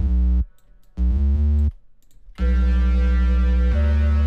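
Deep synthesizer notes auditioned as MIDI notes are placed and dragged in a piano roll: a short note, then a note stepping quickly through several pitches, then a long held note from about halfway that shifts pitch near the end.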